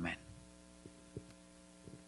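Faint steady electrical mains hum, several steady tones at once, with a few faint ticks near the middle; a spoken word is cut off at the very start.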